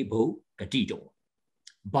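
A man speaking in short, emphatic phrases, with a brief silent gap about a second in.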